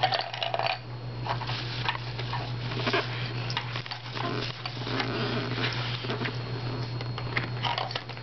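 Small wooden shape-sorter blocks clicking and knocking against the wooden sorter box as they are handled and dropped through its holes: a scattered series of light knocks over a steady low hum.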